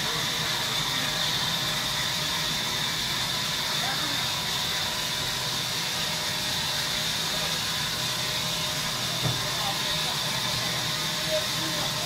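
Large sawmill band saw running steadily as a log is fed into the blade: an even hiss with a steady high tone over it.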